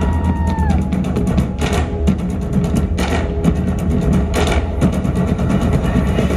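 Several Argentine bombo drums beaten together in a fast, driving rhythm of sharp strokes, with a steady deep bass underneath.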